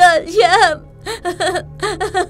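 A young voice crying and sobbing in wavering, broken cries, loudest in the first second, over soft background music.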